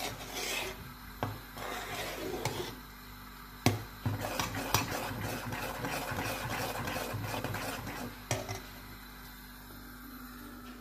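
A metal spoon stirring a large metal pot of milk, scraping along the bottom and sides, with several sharp clinks of the spoon against the pot.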